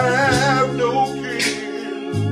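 A man singing a gospel song with a wavering, sliding held note in the first second, over sustained chords on an electronic keyboard.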